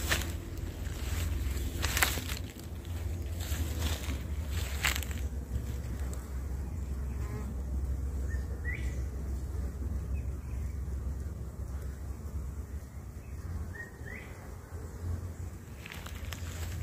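Honeybees buzzing around their wooden hives over a steady low rumble. A few sharp knocks come in the first five seconds, and two short rising chirps come later.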